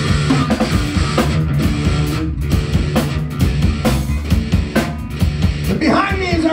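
Live rock band playing an instrumental passage: drum kit with bass and electric guitar. A voice starts singing right at the end.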